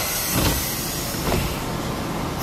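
A loud, steady rushing noise, with a low thump about half a second in.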